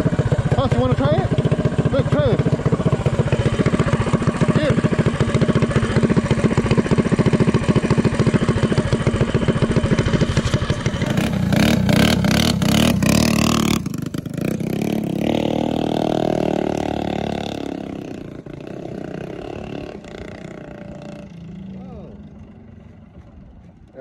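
Drag minibike's Predator 212cc single-cylinder engine running steadily, then revving harder about eleven seconds in as the bike moves off, its sound fading steadily as it rides away down the street.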